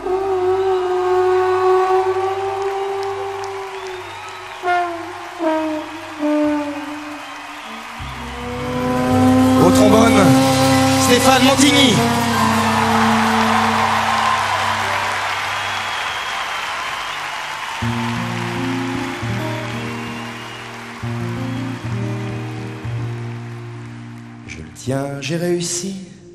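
Trombone holding a long note over the band as a live song closes, with sliding notes and cymbal-like strikes about ten seconds in. A swell of audience cheering and applause follows and fades. The band then starts a new stepping pattern of notes over a bass line near the end.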